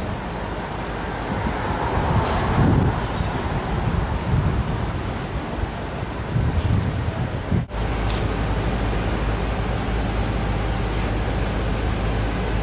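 City street background noise: a low traffic rumble with a few faint short clicks. About two-thirds of the way through the sound drops out briefly and switches to a steadier low hum.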